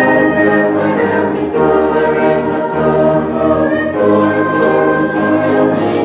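A youth choir singing together, holding long sustained notes.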